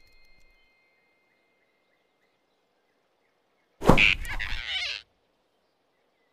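A cartoon grab sound effect about four seconds in: a sudden thump with a rushing whoosh lasting about a second, as the big rabbit snatches the flying squirrel off the branch. Before it there is near silence.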